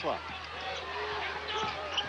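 A basketball being dribbled on the hardwood court during play, with a few short bounces over a steady arena crowd noise. A commentator's voice is heard at the start.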